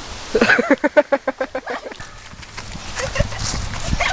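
Girls laughing: a quick run of short, pulsed laughs in the first two seconds that then dies away, with a few low thumps near the end.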